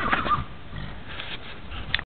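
The tail of a horse's whinny, a wavering high call that ends about a third of a second in, followed by a sharp click near the end.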